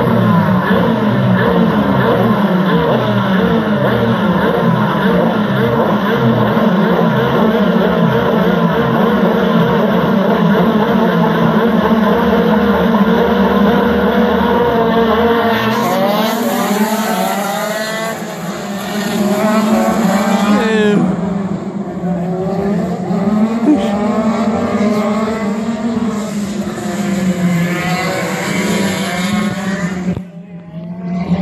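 A pack of KZ2 shifter karts' 125cc two-stroke engines revving together on the grid, a dense, wavering blare of many engines. About halfway through they launch: the pitch climbs again and again as the karts accelerate up through their gears, and later engines rise and fall in pitch as karts go past.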